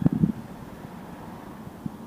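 Wind buffeting the microphone: a low, steady rumble, with the tail of a louder sound dying away in the first moments.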